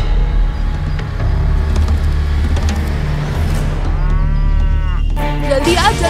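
A cow moos near the end, over background music with a steady low bass line. Just before the end a voice starts.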